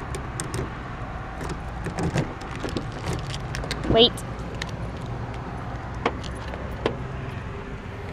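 A bunch of keys jingling in the hand with scattered light metallic clicks as a car door is unlocked and opened, over a steady low rumble.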